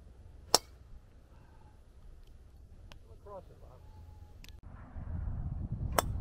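Golf club striking a ball: a single sharp crack about half a second in, followed by low rumbling noise building near the end.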